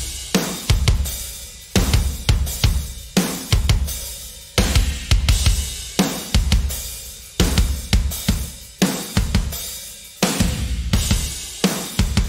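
Playback of a drum-kit groove whose kick is a sampled one-shot layered with Drum Vault Kick Arsenal room samples, the "thump" layer just blended in for a fatter kick. Heavy hits land about every second and a half with lighter strokes and cymbal wash between.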